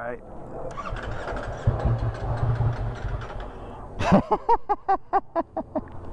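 Ducati Streetfighter V4S's 1103 cc V4 engine being started: a short spell of cranking, then the engine catches about a second and a half in and settles into a steady idle. A man laughs over it near the end.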